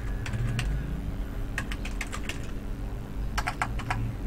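Typing on a computer keyboard: scattered keystrokes in a few short runs, quickest near the end.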